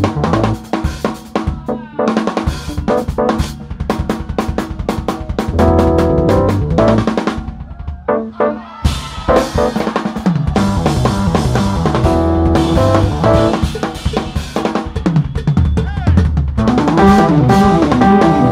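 Live jazz-fusion band with the drum kit to the fore: snare and bass-drum fills and rimshots between short band stabs, then about nine seconds in the full band comes in together over a moving bass line.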